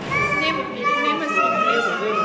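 High-pitched children's voices calling out over crowd chatter, echoing in a large church hall.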